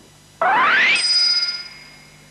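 Cartoon sound effect: a quick rising swoop that ends in a bright, bell-like ding, which rings on and fades away.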